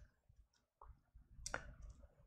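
Near silence with two faint clicks, the second, about one and a half seconds in, the louder.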